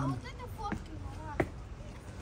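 Faint voices of people talking nearby, with one sharp knock about one and a half seconds in.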